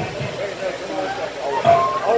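Several people talking over one another, with music under the voices and one voice calling out loudly near the end.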